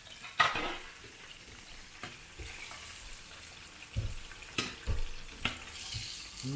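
Chicken strips deep-frying in hot oil, a steady sizzle, with metal tongs knocking against the pot as pieces are lifted out: one sharp clack about half a second in and several more knocks near the end.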